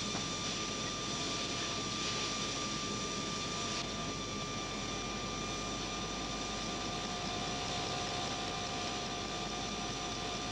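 Steady mechanical whir and hum of a 1960s mainframe's magnetic tape drive running, with a few steady tones over it. The sound shifts slightly about four seconds in.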